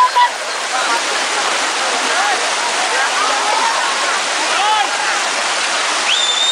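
Fast, muddy mountain river rushing over rocks and rapids in a steady, loud hiss, with the scattered calls and shouts of a crowd wading in it.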